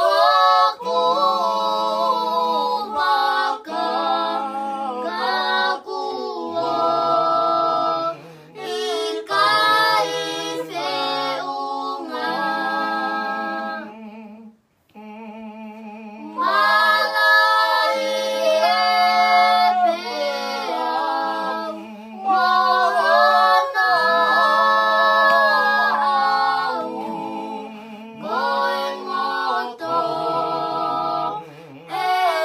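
Tongan hiva 'usu hymn sung unaccompanied by a small group, a girl's voice on top with lower voices holding long notes underneath. The singing breaks off briefly about halfway through, then resumes.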